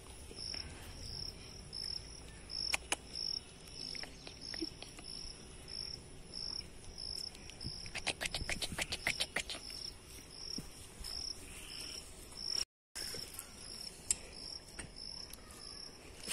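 Insect chirping outdoors: a steady high-pitched pulse repeating about twice a second, with a thin constant whine above it. A quick run of sharp clicks or taps comes about eight seconds in.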